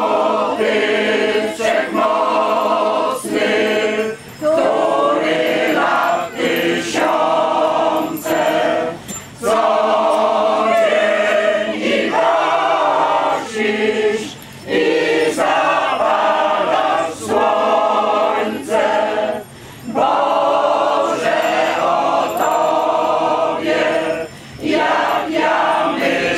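Choir of mostly older women singing a religious hymn in phrases of a second or two, with short breaks between lines.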